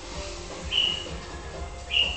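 Two short, high-pitched chirps about a second apart over faint background music and a steady low hum.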